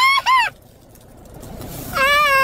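A man's high-pitched squealing laugh: two short squeals in the first half second, each rising and then falling in pitch, with a long held cry starting right at the end.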